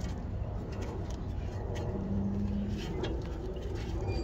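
Faint light clicks of a brake pad and caliper being handled as the pad is pushed into a front disc-brake caliper that will not seat, over a low steady rumble. A short steady low tone sounds about two seconds in and lasts under a second.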